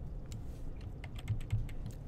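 Computer keyboard clicking: a quick run of keystrokes as a block of code is copied and pasted with Command-C, V, V.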